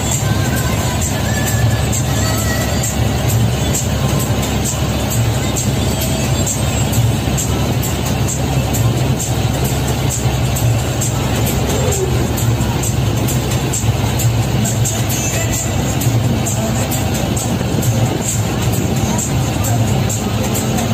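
Music with a singing voice and a steady beat, over the low running drone of the bus.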